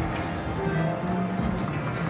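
Buffalo Ascension slot machine playing its game music and reel-spin sounds while the reels spin, a held tune with soft low thumps under it.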